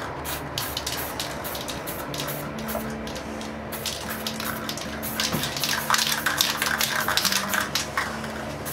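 Aerosol spray paint can hissing in many short bursts as black paint is sprayed along the edge of a paper card used as a mask. The bursts come thicker and louder in the second half.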